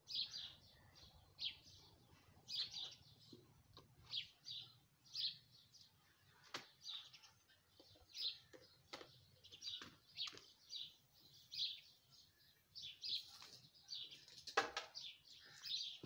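A small bird chirping again and again, short high calls at an uneven pace of about one or two a second, with a few faint clicks between them.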